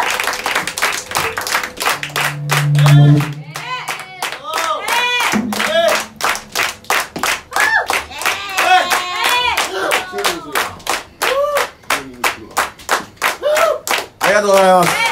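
Hand clapping at a steady rhythm of about three claps a second, with voices calling out over it. A low held tone about two to three seconds in is the loudest sound.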